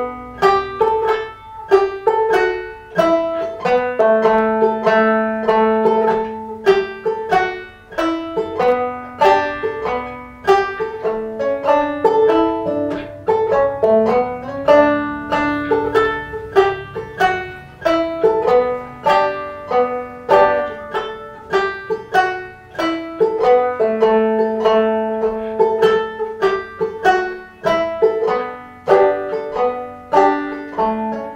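Five-string banjo played clawhammer style: a lively old-time tune played through at full tempo, with a steady run of plucked notes, hammer-ons and pull-offs.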